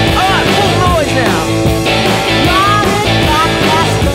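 Rockabilly band music in an instrumental passage: a lead electric guitar playing bent, sliding notes over a steady bass-and-drums beat.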